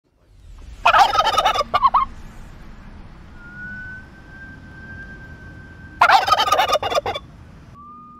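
A male domestic turkey gobbling twice, each gobble a rapid warbling call about a second long, the two about five seconds apart.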